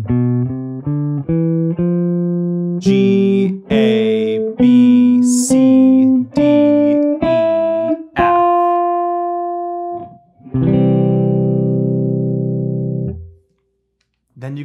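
Gibson Les Paul electric guitar picking an ascending major scale one note at a time over two octaves, starting on F (C major from its fourth degree). The run ends on a long held high note, then a chord rings for about three seconds and is cut off near the end.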